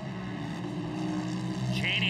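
Engines of racing side-by-side UTVs running hard as two cars pass together, heard as a steady drone.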